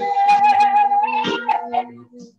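A singer holds one long high note for about a second, then sings shorter notes, over a steady held instrumental tone.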